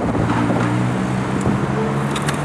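City road traffic: cars passing close by on a busy street, with a steady low engine hum underneath.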